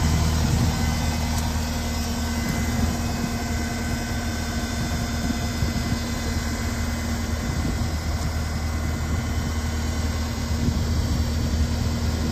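Caterpillar 259D compact track loader's diesel engine running steadily at idle, a constant low hum.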